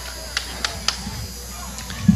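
Low steady hum and hiss from the commentary microphone, with three faint clicks in the first second.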